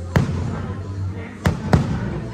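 Aerial firework shells bursting: three sharp bangs, one just after the start and two close together about a second and a half in, each with a short rumbling tail.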